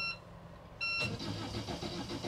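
The engine panel gives a short beep at the start and another just before a second in. From about a second in, the starter cranks the boat's Volvo Penta D2-40 marine diesel over in a quick, even rhythm as she holds the start button to warm the oil.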